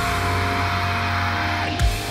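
Metalcore song playing, with a distorted guitar chord held through most of it and a drum hit near the end.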